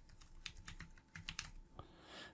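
Computer keyboard typing: a faint run of quick, unevenly spaced keystrokes as a username is entered.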